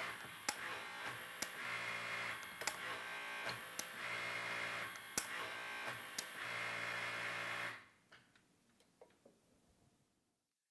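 Electric hydraulic pump running the Snap-on LTQ low-profile hydraulic torque wrench as it is cycled from the remote pendant: a steady hum with three louder stretches of about a second each, one per wrench stroke, and sharp clicks between them. It stops about eight seconds in.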